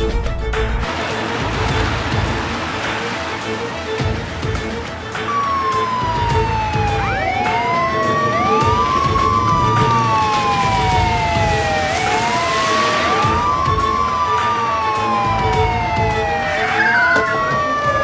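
Police car sirens wailing over dramatic background music with a steady beat; from about five seconds in, two sirens overlap, each pitch sliding slowly down and jumping quickly back up about every three seconds.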